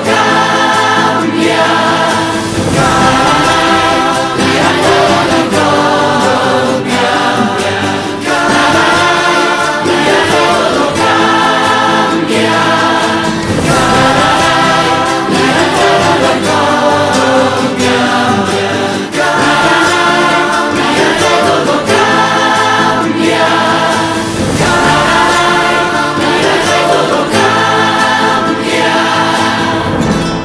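A choir of many voices singing together with musical accompaniment, in short phrases that repeat.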